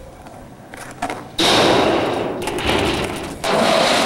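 Skateboard wheels rolling on a concrete skatepark surface: a loud, steady rushing that starts suddenly about a second and a half in and carries on, after a faint knock just before it.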